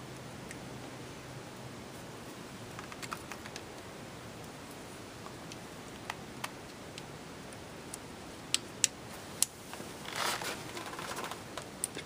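Light metallic clicks and taps of small parts being handled and fitted in a Saiga 12 shotgun's steel receiver, over a faint steady hiss. A cluster of three sharper clicks comes near the end, followed by a brief scraping rustle.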